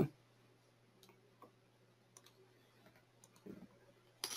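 A few faint, scattered computer mouse clicks over a low steady hum, with a short soft low sound near the end.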